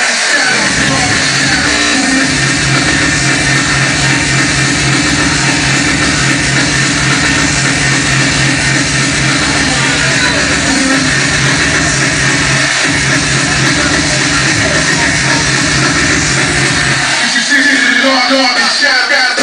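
Loud, distorted hardcore/industrial electronic music over a club sound system, with a fast, heavy kick drum. The kick and bass drop out briefly near the start and again near the end.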